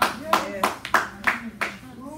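About six hand claps at a steady beat of roughly three a second, dying out before the end, with faint voices underneath.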